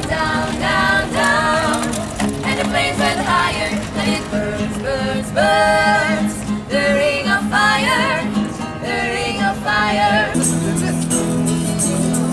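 Street buskers, young men and women, singing together over a strummed acoustic guitar. About a second and a half before the end it cuts to a different song: acoustic guitar strumming to a steady beat with a regular high rattle.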